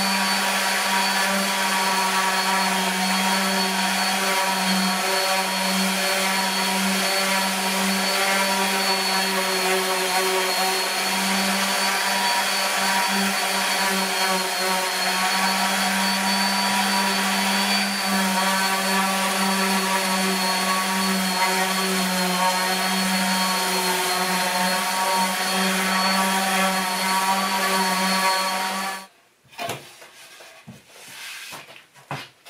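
Electric random orbital sander running steadily while sanding a southern yellow pine shelf, a constant hum with a high whine over it. It is switched off and stops suddenly about a second before the end.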